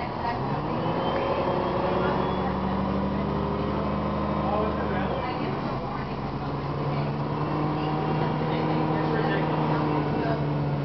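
The Cummins ISM diesel engine of a 2007 Gillig Advantage transit bus, heard from inside the passenger cabin, pulling the bus up to speed through its Voith automatic transmission. About five seconds in, the engine note drops with an upshift, then holds and slowly climbs again.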